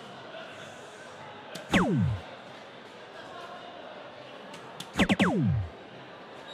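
Electronic soft-tip dartboard's hit sounds. About one and a half seconds in, a dart strikes the board and a single falling electronic tone sounds, scoring a single. Near the end, another dart strikes and three overlapping falling tones sound, the board's sound for a triple.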